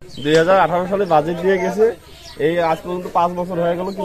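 A man talking into the microphone, in two stretches with a short pause about two seconds in.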